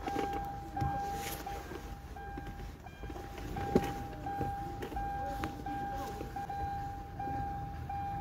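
A steady electronic beep at one pitch, repeating with short breaks about every two-thirds of a second, over a low background rumble; a single click a little before the middle.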